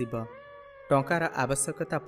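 A voice reading in Odia, with a short pause about a quarter of a second in and faint steady background music tones beneath it.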